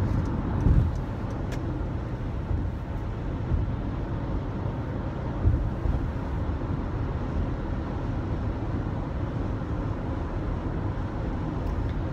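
Steady road and engine noise inside a car cruising at highway speed, with a couple of brief low bumps.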